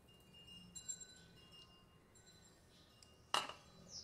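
A single sharp clink against a stainless steel pot about three seconds in, with a short ring after it, and a few light ticks earlier. Faint, thin, steady high tones sound in the background.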